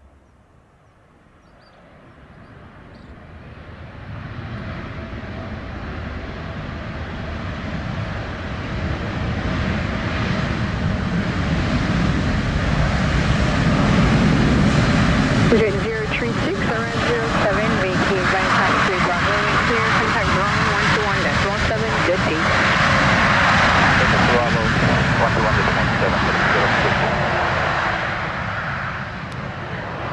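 Boeing 787 Dreamliner's turbofan engines in reverse thrust during the landing rollout, building over about ten seconds to a loud, steady rumble with wavering tones, then easing off near the end.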